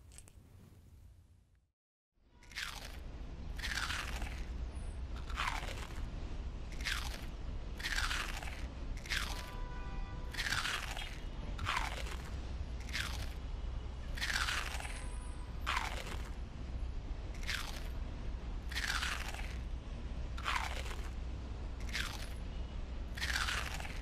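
Potato chips being crunched in a run of bites, one crunch about every second and a half, starting a couple of seconds in over a steady low hum.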